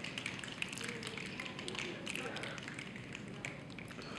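Quiet hall with scattered soft taps and clicks from the audience and faint murmuring.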